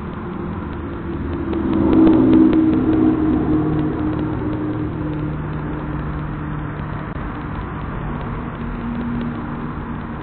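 An engine running, loudest about two seconds in, then settling to a steady lower hum, heard through a security camera's narrow-band microphone.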